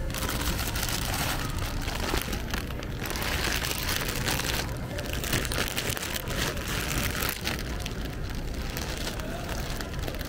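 Plastic bags of packaged candy crinkling and rustling as they are handled and pulled from a display bin, in irregular waves, with a steady low rumble underneath.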